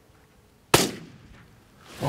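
A single rifle shot at a coyote about 160 yards off, with a short echo dying away after it; the shot goes just over the coyote, a miss.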